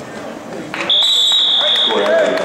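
Scoreboard buzzer sounding one steady high tone for about a second, starting about a second in, signalling the end of the first period of a wrestling bout.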